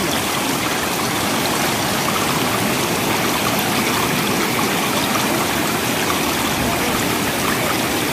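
Floodwater running steadily in a loud, even rush of water.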